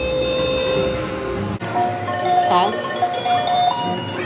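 Slot machine electronic tones over casino chatter. A steady chime is held for about a second and a half, then cuts off abruptly and gives way to a string of short beeping notes.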